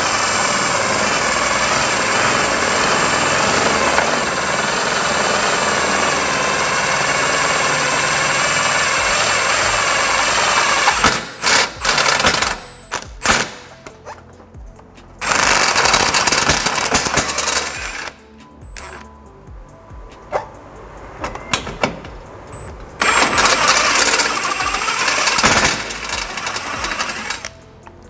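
Cordless impact driver hammering a stubby step drill bit up through the car's metal crash bar. The first run lasts about eleven seconds, then the drilling goes on in shorter bursts with pauses between. An impact driver is the wrong tool for drilling, so the bit is driven by the driver's hammering rather than by a drill's smooth spin.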